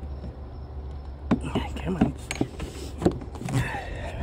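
The plastic air filter box and its clips being handled and pushed into place: a few light clicks and knocks over a steady low hum.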